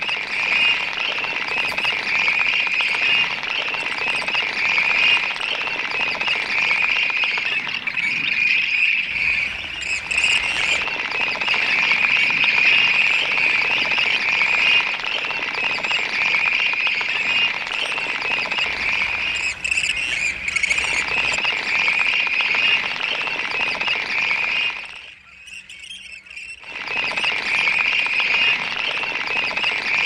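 A dense, steady chorus of high calls from the marsh, strongest in one narrow high band. It drops away abruptly about twenty-five seconds in and returns a second or so later.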